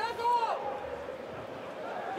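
Football stadium sound during a match: low background noise from the ground, with a single high-pitched shout near the start.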